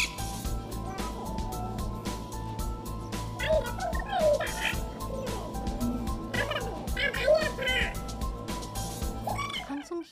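Background music with held tones and a steady low pulse. A woman's high-pitched voice in Korean from a street recording cuts in twice, about three and a half and six and a half seconds in, mocking and imitating someone in pain.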